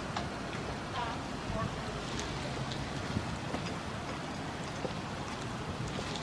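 Steady outdoor street noise, an even hiss with traffic rumble, with faint distant voices near the start and a few light clicks.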